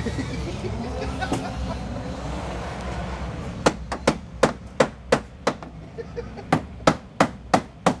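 Hand hammer beating on the crash-bent front end of a Nissan Silvia S13 drift car to straighten the damaged metal. After about three and a half seconds of steady background noise comes a quick run of about eight sharp blows, a brief pause, then five more at about three a second.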